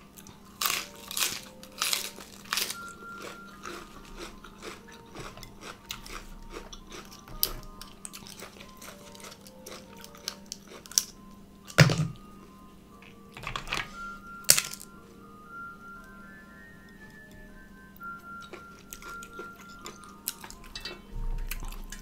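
Close-miked crunchy chewing of raw leafy vegetables, in bursts, with a couple of sharp louder clicks about 12 and 14.5 seconds in. Faint background music plays underneath.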